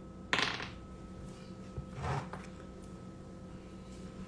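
Two short breath noises close to a phone's microphone, the first loud and sharp about a third of a second in, the second fainter about two seconds in, over a faint steady electrical hum.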